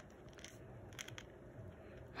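Dwarf hamster nibbling rolled oats: faint, scattered small crunching clicks.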